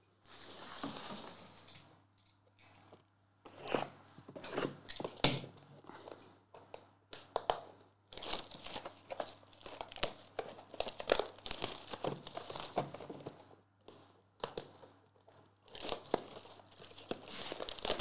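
Plastic shrink-wrap being torn and peeled off sealed cardboard trading-card boxes, crinkling and crackling in irregular bursts with a few short pauses.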